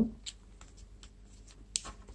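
Faint ticks and scrapes of a Nebo Larry work light's cap being screwed onto the threads of its aluminium body by hand, with a slightly louder click near the end.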